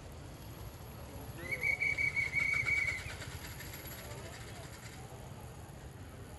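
A shrill whistle blown once, a steady high trill lasting about a second and a half, over the murmur of a crowd talking.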